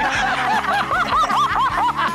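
High-pitched laughter, a quick run of rising-and-falling 'ha' sounds about five a second, over background music.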